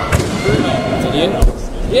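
A gymnast landing a vault on a thick landing mat: a heavy, dull thud about one and a half seconds in, after lighter thumps near the start, with spectators' voices around it.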